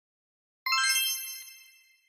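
A bright chime sound effect about two-thirds of a second in: several clear high tones enter in quick succession and ring out, fading away over about a second.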